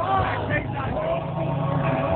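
A chord from the stage band held steady under crowd voices and shouts, between songs at a live arena concert.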